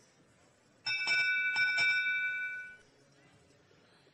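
Electronic bell-like chime from the match control system, marking the end of the autonomous period. It rings for about two seconds, starting about a second in, with a second strike partway through.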